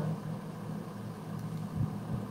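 Room tone: a faint steady low hum, with one brief soft low thump near the end.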